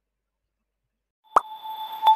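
Silence, then about a second and a half in, a sharp pop opens an electronic transition sting: several steady ringing tones over a soft hiss, the intro sound for a new section's title card.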